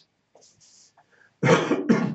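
A man coughing twice in quick succession into his hand, about one and a half seconds in.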